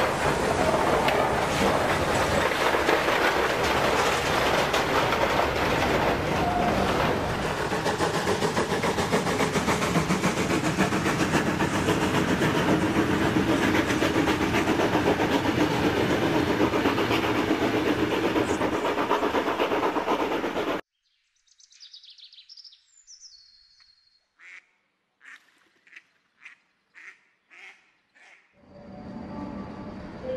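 A full-size train of vintage passenger coaches rolling past, its wheels clattering over the rail joints in a dense, steady din. The sound cuts off abruptly about two-thirds of the way through, and what follows is faint: a brief falling whistle and then about eight short, evenly spaced clicks, roughly two a second.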